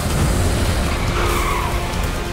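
Car tyres skidding with a screech that rises and falls about a second in, over a steady low rumble.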